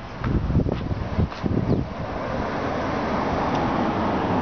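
Road traffic noise from a passing vehicle, with wind buffeting the microphone. Irregular low rumbles come first, then a steady rushing noise that builds from about two seconds in.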